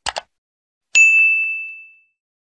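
Two quick clicks, then a single bright bell-like ding about a second in that rings and fades away: the stock click-and-notification-bell sound effect of a subscribe-button animation.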